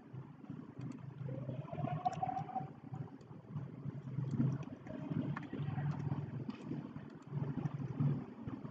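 Quiet low steady background hum with a few soft, scattered mouse clicks while profile lines are sketched on a computer.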